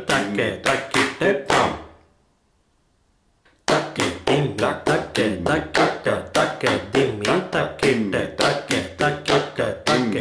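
Konnakol: South Indian rhythm syllables (takka, dhim) spoken in a steady, even rhythm, with hand claps marking the beat. It breaks off about two seconds in, falls to near silence for over a second, then starts again.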